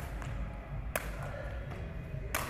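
Plastic sepak takraw ball kicked with the foot: two sharp taps, one at the start and a louder one about a second in, over a low steady rumble.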